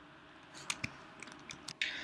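A few faint, sharp clicks, two close together a little before the middle and lighter ticks after, then a short breath drawn near the end.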